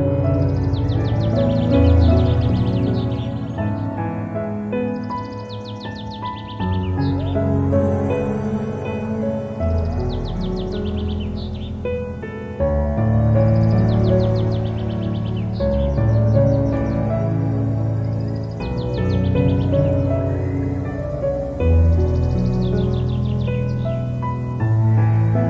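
Calm instrumental background music with bird chirps mixed in, the chirps coming in short flurries every few seconds.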